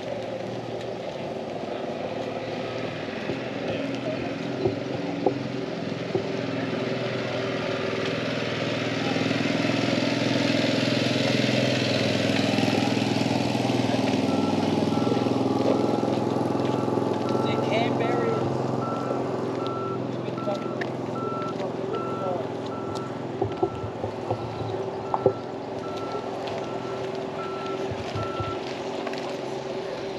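A vehicle engine running, growing louder in the middle and then easing off, while a reversing alarm beeps at about one beep a second for the second half.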